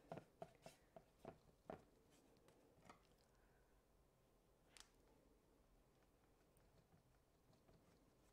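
Near silence, with a few faint soft ticks in the first two seconds from a paintbrush working thick acrylic paint onto a wet canvas board.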